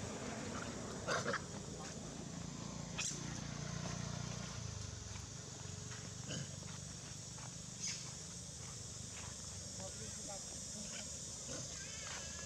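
Macaque monkeys making short, scattered calls, with a low rumble about halfway through.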